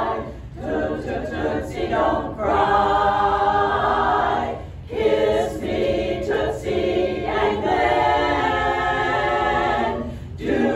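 Women's barbershop chorus singing a cappella in close harmony, holding long chords with short breaks between phrases.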